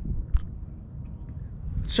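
Low rumble of wind and handling noise on a handheld camera's microphone while it is carried, with one sharp thump about a third of a second in.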